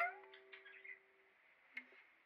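A last strum on a ukulele, its notes ringing and dying away over about a second, with a short upward pitch slide just after the strum. A soft knock follows near the end as the ukulele is handled.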